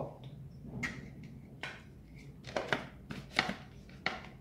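A handful of light, separate clicks and knocks from a plastic blender jar being handled on its base, with two close pairs in the second half. The blender motor is not running yet.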